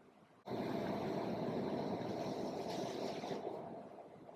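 A steady rushing noise with no clear pitch, starting abruptly about half a second in and fading out near the end.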